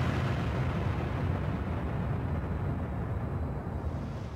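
A steady, low, noisy rumble that eases off slightly near the end.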